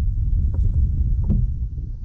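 Wind buffeting the microphone on an open bass boat, a steady low rumble, with a few light knocks as a bass is swung aboard.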